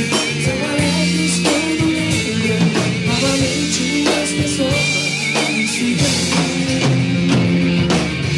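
A live rock band playing with electric bass, drum kit with cymbals and percussion. Drum hits come at a steady beat under sustained bass and guitar notes.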